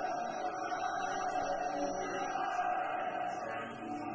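Live metal band's amplified instruments holding a steady, sustained drone, with no drum beat.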